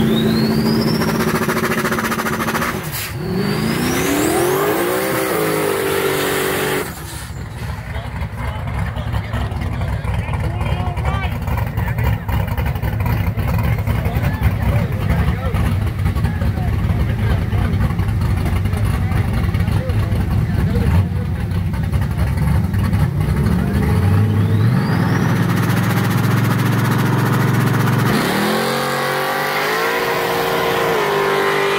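Drag race car engine at full throttle pulling away, its revs climbing, dropping at a gear shift about three seconds in and climbing again. After an abrupt change, engines idle roughly at the line with people talking, are held at steady raised revs, and two cars launch near the end.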